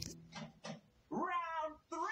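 A cartoon character's voice crying: a couple of short sniffs, then a wavering, whimpering wail about a second in.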